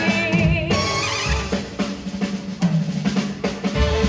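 Swing big band playing: a sung phrase ends about a second in, then the drum kit plays a break over the bass, and the full band comes back in near the end.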